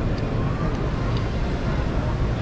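Convention-hall ambience: a steady low rumble with distant, indistinct voices of attendees.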